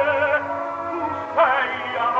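Operatic tenor singing with wide vibrato over an orchestra. A held note eases off about half a second in, and a loud new note is attacked with an upward slide about a second and a half in.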